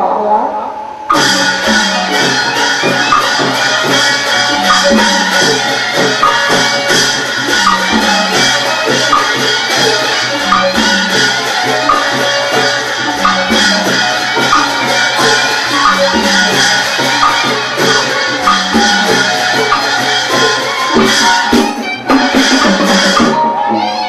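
Burmese hsaing waing ensemble playing nat pwe music, driven by drums and struck percussion keeping a quick, steady beat. It starts abruptly about a second in and drops out briefly near the end.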